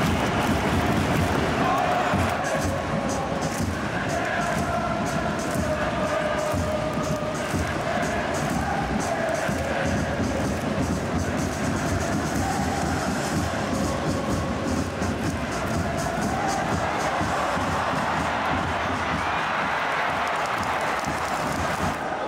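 Football supporters in the stadium stands singing and chanting together over a rhythmic beat.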